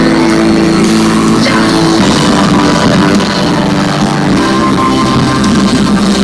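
A live rock band playing loud through a festival PA, with drums and guitar.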